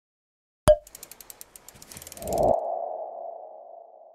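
Sound effects of a news channel's logo sting. A sharp hit comes in after a short silence, followed by a quick run of ticks. A swelling whoosh then rises into a ringing sonar-like tone that slowly fades.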